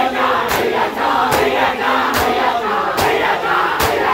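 Crowd of mourners doing matam, slapping their bare chests with their hands in unison: five sharp strikes, a little under a second apart, over the shouting and chanting voices of the crowd.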